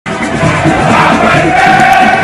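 A loud crowd shouting and chanting over music, cutting in abruptly at the start, with a steady held tone running through it.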